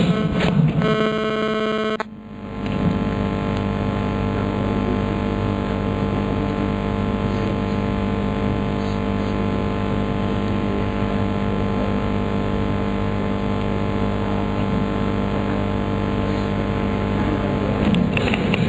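An electronic tone held for about a second cuts off two seconds in. A steady drone of many held tones over a hiss then follows, unchanging.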